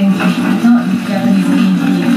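A television programme's soundtrack, background music with a person's voice over it, heard through the TV's speaker.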